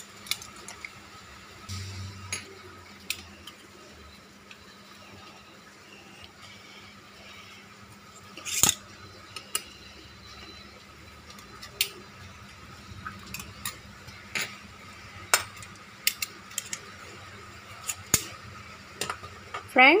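Scattered clicks, taps and knocks of kitchen handling: a utensil against dishes and the plastic jar of a small portable blender as orange pieces are put in. The loudest knock comes just before halfway; the blender motor is not running.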